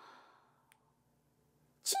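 Near silence, then near the end a woman takes a short, audible in-breath.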